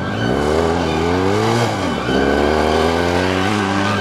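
Adventure motorcycles accelerating past on a gravel road. Engine pitch rises, drops sharply about two seconds in, rises again and drops near the end.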